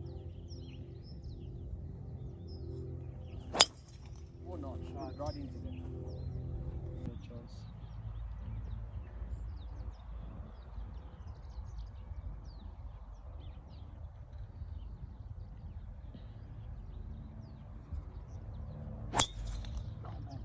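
Two golf driver tee shots: a sharp crack of the clubhead striking the ball, once about three and a half seconds in and again near the end.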